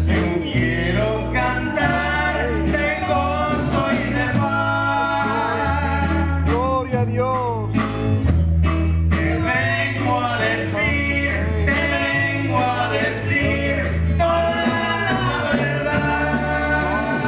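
Live gospel praise song: two men singing into microphones over a church band of guitars and a drum kit, with a low bass line changing note about once a second and a steady drum beat.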